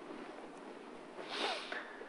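A short, soft intake of breath by the speaker near the microphone, about halfway through, over faint room noise.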